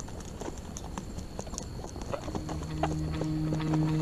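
A downed wild hog kicking and scuffing in the dirt: irregular light knocks and scrapes. Music with low held notes fades in over the second half and grows louder toward the end.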